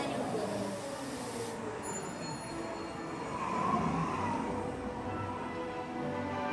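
Frozen Ever After ride boat travelling through a dark tunnel: a steady low rumble with a hiss. Show music fades out at the start and comes back in near the end.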